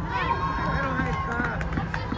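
Several children's voices calling and shouting across an indoor football pitch, echoing under the dome, over a steady low hum.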